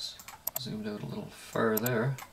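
A man talking, with a few sharp clicks from computer mouse or keyboard use falling before and among his words.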